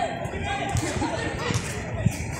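Men's voices calling out on an open football pitch, with a short thump of a ball being kicked about one and a half seconds in.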